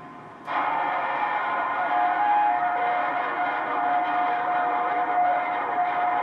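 HR2510 radio's speaker receiving an incoming signal on 27.085 MHz: a loud, dense, buzzing sound that cuts in about half a second in, with a steady whistle held over it from about two seconds in.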